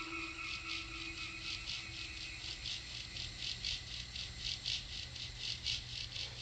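A rhythmic pulsing hiss, about four pulses a second, over a low steady hum, with the held tone of a music chord dying away in the first few seconds.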